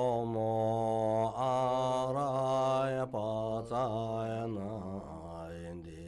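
Buddhist mantra chanting by a deep voice, in long held notes that glide slightly in pitch, with short breaks for breath.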